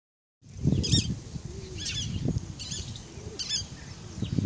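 A bird calling repeatedly: a short cluster of high, chirpy notes about once a second, four times. Under it runs an uneven low rumble, loudest in the first second.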